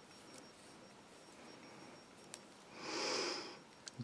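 A short sniff, a breath drawn in through the nose, about three seconds in. Before it come a few faint soft ticks.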